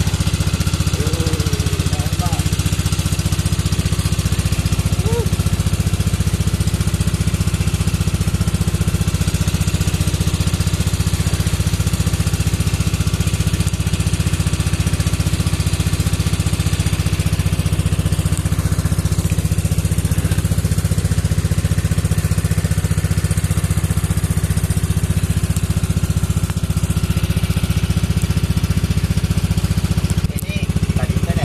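Small engine of a bot penambang river ferry boat running steadily at cruising speed, a constant low drone heard from on board.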